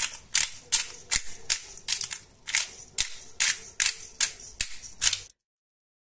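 Hand pepper mill grinding peppercorns, each twist giving a sharp crunch, about fourteen in an even run a little under three a second, stopping abruptly about five seconds in.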